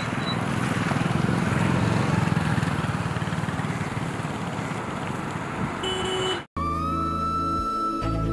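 Rushing noise of road traffic, a vehicle passing, swelling about two seconds in and then fading. Near the end comes a short chime, a brief cut to silence, and then music.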